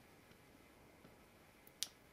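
Near silence, then a single sharp click of a computer mouse button near the end.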